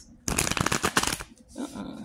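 A deck of tarot cards being shuffled: a rapid run of card clicks lasting about a second.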